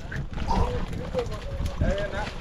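Men's voices calling out in the background over a steady low rumble of wind and boat noise, with a few faint knocks.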